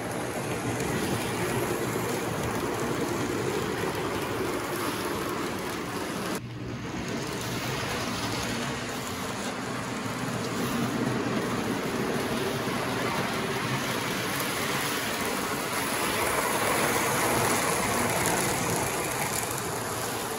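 N-scale model freight train running around the layout track: a steady running noise of the small locomotive and its cars on the rails, with a short dip about six seconds in.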